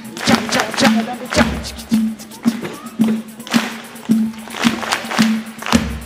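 Live Brazilian-style band music with a steady beat of nearly two strokes a second, a small four-string guitar strummed, and children clapping along in time. A deep bass thud comes twice, about a second and a half in and near the end.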